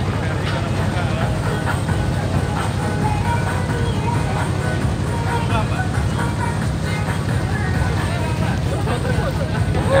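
A klotok river boat's inboard engine, likely a single-cylinder diesel, running steadily with a fast, even low chugging while the boat cruises along. Faint voices and music sit behind it.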